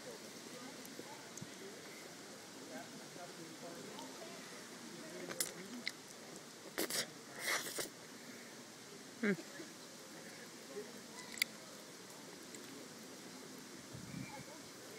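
A ferret licking an ice cream cone: faint, small wet licks with a few sharp clicks. Near the middle there is a brief rustle of handling noise.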